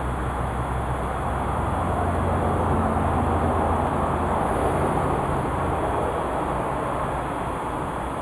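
Steady low rumble with a deep hum underneath, a little louder in the middle.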